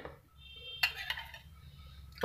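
A brief click, then about a second in a faint, high-pitched call in the background.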